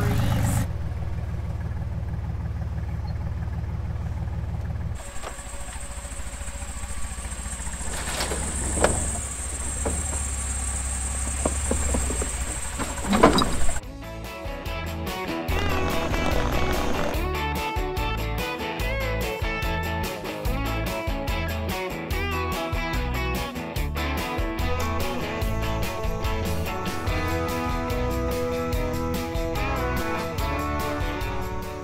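A vehicle engine running steadily, then a different engine drone with a thin high whine and two knocks. A little before halfway it gives way to background music with strummed guitar and a steady beat.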